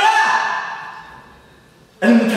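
A man's voice preaching in Arabic: the last word of a phrase at the start fades out, followed by a pause of about a second and a half.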